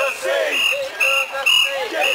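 A group of festival-goers chanting in rhythm, short calls on a steady high pitch about twice a second, with shouting voices between them.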